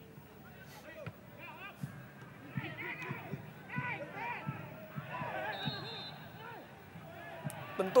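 Faint football-stadium ambience from the broadcast's field microphones: scattered short shouts and calls from crowd and players, with a few faint thuds.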